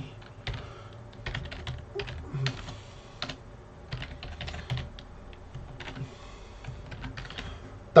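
Typing on a computer keyboard: a run of irregular key clicks, several a second.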